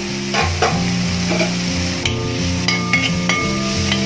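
Sliced shallots, green chillies and curry leaves sizzling in hot oil in an aluminium pan, stirred with a steel ladle that clicks and scrapes against the pan a few times past the middle. Steady low background music runs underneath.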